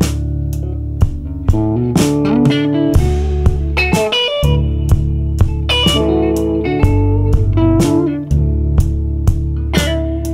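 Band demo: electric baritone guitar playing a bluesy line over a bass and a drum kit keeping a steady beat of about two hits a second. The low end drops out briefly about four seconds in and again near the end.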